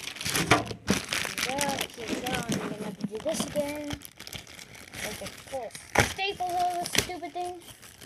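Packaging crinkling and crackling, with several sharp snaps, as a box is worked open by hand. A voice makes short wordless sounds over it.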